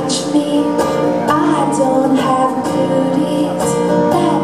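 Acoustic guitar strumming chords in a steady rhythm as a song's introduction, the chords ringing on between strokes.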